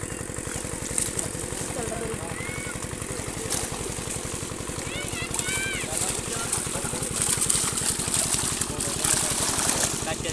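A small engine runs steadily with a fast, even throb under people's voices. A rustling, splashing hiss grows louder over the last few seconds as the wet net and its catch are dragged up onto the sand.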